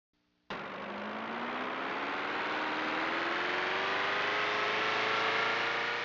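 Sci-fi flying-saucer take-off sound effect. A rushing, engine-like drone starts suddenly about half a second in, with a whine that rises slowly in pitch and grows a little louder as the craft lifts away.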